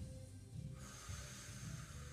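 Faint background music under a slow breath out that starts about a second in: controlled breathing while an isometric adductor squeeze is held.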